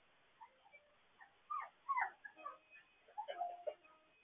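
Young puppies whining and squeaking in short cries that slide up and down in pitch. In the second half a few steady held notes come from the children's toy keyboard the puppy is pawing. All of it is heard through a home security camera's thin microphone.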